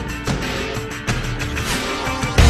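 Dramatic theme music under a TV programme's title sequence, driven by rapid percussion hits over sustained tones.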